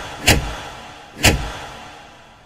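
Two heavy, echoing clunks about a second apart, each dying away slowly: the sound effect of large stage spotlights switching on one after another.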